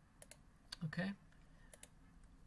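Two pairs of quick computer mouse clicks, about a second and a half apart.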